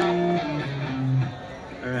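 Amplified electric guitar picking a few held single notes between songs, the notes ringing and fading away.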